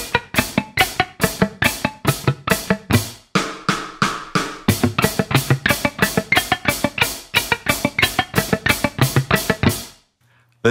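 Electric guitar playing a two-notes-per-string alternate-picking drill with string skipping, an even stream of about four picked notes a second, over a drum beat. The playing stops at the end.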